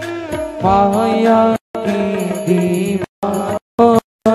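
Devotional Hindu song sung with instrumental accompaniment. The sound cuts out completely three times for a moment.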